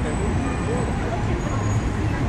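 Busy city street ambience: a steady low traffic rumble with people talking in the background.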